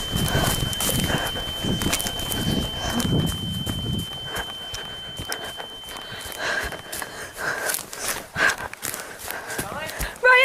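Hand-held camera handling and footsteps rustling and thumping through dry forest leaves, with a person's heavy, distressed breathing, strongest in the first few seconds. A faint steady high whine runs under it and cuts off about seven seconds in.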